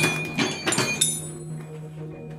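Metal chain and hook of a lifeboat tie-down clinking and knocking a few times as it is unhooked and released, between about half a second and one second in. Background music plays underneath.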